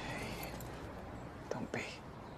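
A soft, breathy human voice close to a whisper, with a brief mouth click near the start and another about one and a half seconds in.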